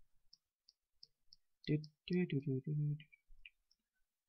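A few light, high clicks, about three a second, then a man's wordless voice for about a second, in short syllables.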